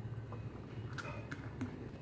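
Thick milkshake being poured from a blender jar into a glass, faintly, with a few light clicks near the middle as the glass is handled and set down on a stone counter.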